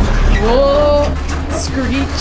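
Low steady rumble of a converted school bus driving slowly along a sandy dirt track, heard from inside the cab. A rising, then held vocal 'ooh' comes about half a second in, and a short high hiss comes near the end.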